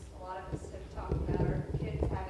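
A person speaking, with a cluster of low knocks and rumbles over the voice in the second half.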